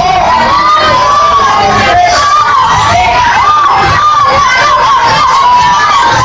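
A man and a woman singing a gospel song live into microphones, loud throughout, with a high voice bending up and down in long arching runs.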